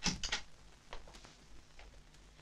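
Glassware and plates being set down on a dinner table: a cluster of light clinks and knocks at the start, then a few faint taps.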